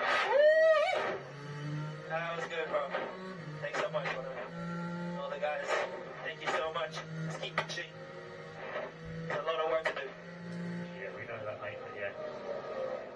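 Formula 1 team radio: a racing driver's voice over a compressed, tinny radio link, in short broken bursts, with a loud rising-and-falling shout in the first second. A steady low hum runs beneath.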